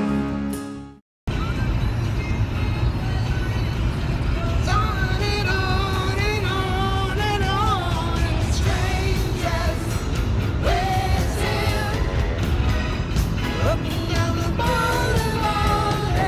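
A song fades out in the first second, then after a short gap comes a steady low road rumble inside a moving car, with a man singing along to music over it.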